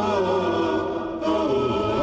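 Choir-like vocal chanting in held, slowly gliding notes, several voices layered together, with a brief dip about a second in.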